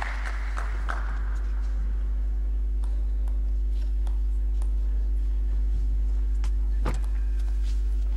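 Spectators' applause fading out over the first second or so, leaving a quiet hall with a few scattered sharp clicks, one louder near the end, over a steady low hum.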